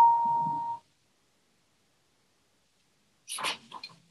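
Grand piano chord ringing, cut off abruptly before a second in. Near the end, a brief rustle and a few light clicks of sheet music being turned on the piano's music stand.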